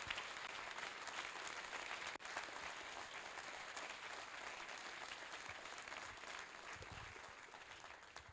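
Audience applauding, the clapping gradually dying down toward the end.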